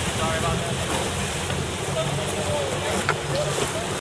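Wind buffeting the microphone over rushing water on a moving boat, with faint voices calling out three times.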